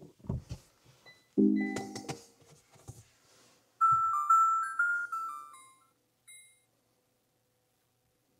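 Kia car's infotainment system playing its power-on sound as the freshly updated head unit wakes: a brief low tone about a second and a half in, then a short melody of bright chime-like tones around four seconds in, and one faint ding near the end. A few soft knocks come before it.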